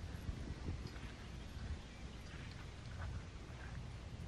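Light wind buffeting the microphone outdoors, an uneven low rumble, with a few faint short high sounds over it.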